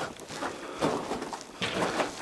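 Footsteps scuffing and crunching on the dusty dirt-and-rock floor of a mine tunnel, a few steps in a row.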